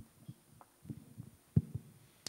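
A handheld microphone being handled: a few muffled low thumps and knocks, the sharpest and loudest about one and a half seconds in.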